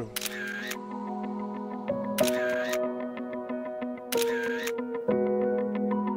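Soft background music of held chords, with three camera-shutter click effects about two seconds apart as each photo comes up.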